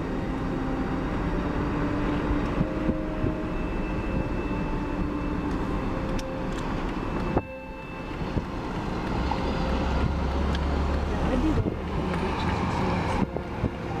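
A moving vehicle's steady engine and road noise, dropping briefly about halfway through, with a stronger low rumble a little later.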